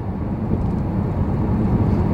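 Road and engine noise heard from inside a moving car: a steady low rumble with no breaks.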